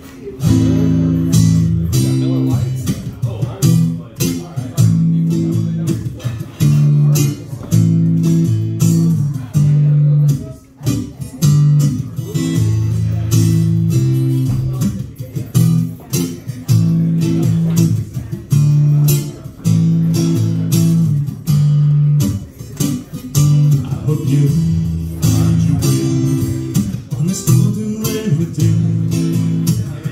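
Acoustic guitar strummed in a steady rock rhythm, a chord pattern repeating every couple of seconds: the song's instrumental intro before the vocals come in.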